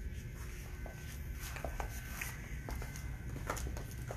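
Quiet indoor room tone: a steady low rumble and a faint thin steady hum, with a few light scattered taps and clicks from footsteps on a hard shop floor.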